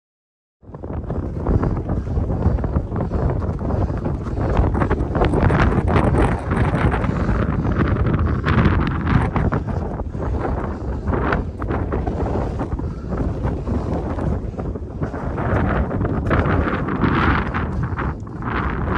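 Strong wind buffeting the microphone, a loud, rough rumble that starts suddenly about half a second in and keeps gusting.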